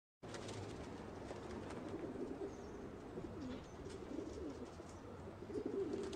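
Several domestic pigeons cooing, low wavering coos overlapping one another throughout.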